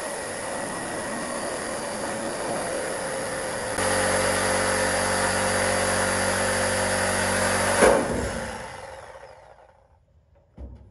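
Handheld corded power tool cutting through the sheet-steel floor of a 1971 Ford F100 cab, running steadily. About four seconds in it gets louder and takes on a strong, steady whine. After a sharp burst near eight seconds the sound dies away.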